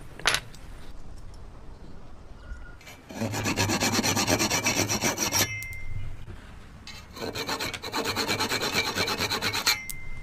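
A single sharp knock near the start, then two spells of quick, rasping strokes of a hand tool on wood, each lasting about two seconds.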